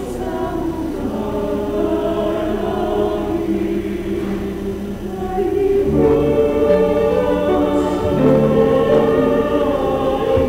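Church choir singing a hymn, held notes in several parts; about six seconds in it swells louder with deeper sustained notes added.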